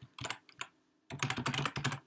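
Typing on a computer keyboard: a few separate keystrokes, a short pause, then a quicker run of keys in the second half.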